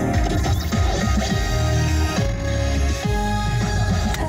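Music playing on the car's radio, with held tones over a low, pulsing bass.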